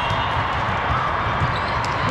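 A volleyball being hit during a rally: short sharp smacks of the ball, the clearest about one and a half seconds in, over the steady din of a large indoor hall full of courts and spectators.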